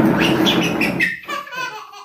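A toddler laughing in high-pitched squeals, then in shorter, lower bursts of laughter. A loud, steady noise lies under the first second and fades out.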